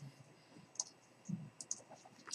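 A few faint, short clicks of a computer mouse, spread apart in an otherwise quiet stretch.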